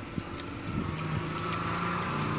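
A steady low motor hum that grows louder about a second in, with faint crinkling from a plastic candy wrapper being picked open.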